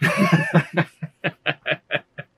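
Two men laughing: a hearty burst of laughter, then a run of short, even 'ha' pulses, about five a second, tapering off near the end.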